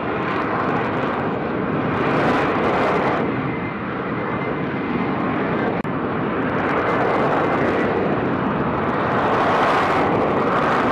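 F-35B's F135 jet engine and shaft-driven lift fan running at hover power in STOVL mode: a loud, steady jet roar as the fighter hangs in slow hovering flight. The sound cuts out for an instant a little before six seconds in.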